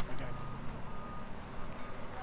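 A vehicle's reversing alarm beeping faintly over a low engine rumble.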